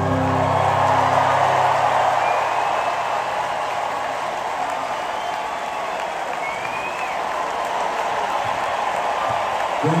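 Large stadium crowd applauding and cheering at the end of a song, with the last chord ringing out and fading in the first second or two and a few whistles sliding up through the applause.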